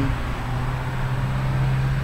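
A steady low hum over a soft, even hiss, with no words.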